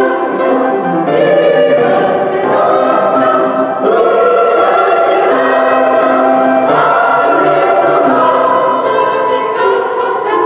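Mixed choir of women's and men's voices singing sustained chords together, with crisp 's' consonants now and then, in a stone church.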